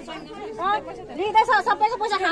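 Speech only: people talking in a crowd.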